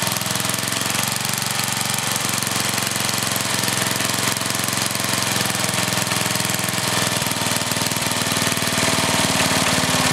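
Older single-cylinder Briggs & Stratton small engine with a one-piece Flo-Jet carburetor running at idle while its idle speed screw is turned with a screwdriver. The pitch wanders slightly and it gets a little louder near the end as the idle speed changes.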